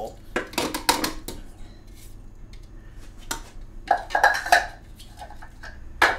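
Kitchen bowls and utensils clinking and clattering on a counter: a run of sharp knocks about half a second in, then single clinks near the middle and the end.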